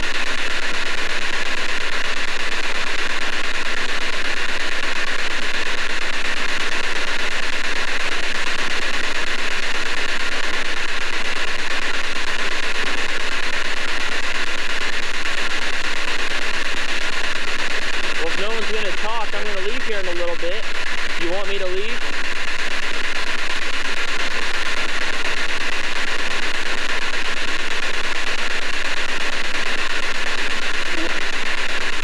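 P-SB7 spirit box sweeping through radio stations, played through a small external Altec Lansing speaker: a steady loud hiss of radio static. About two-thirds of the way through, a few seconds of chopped, warbling fragments of broadcast sound break through the static.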